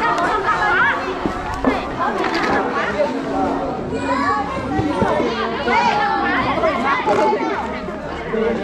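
Many voices chattering over each other, children's voices among them.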